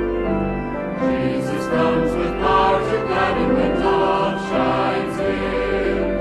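Choir singing a gospel hymn with keyboard accompaniment. The voices come in about a second in, over sustained chords from the instrumental introduction.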